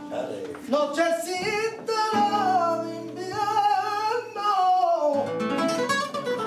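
A flamenco cantaor singing fandangos to flamenco guitar accompaniment. About a second in he takes up one long sung line that bends up and down in pitch over held guitar notes, falling away near the five-second mark as the guitar picks up again.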